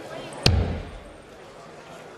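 A dart striking a Winmau bristle dartboard once, about half a second in: a single sharp thud with a short ringing tail, over a faint steady background hum.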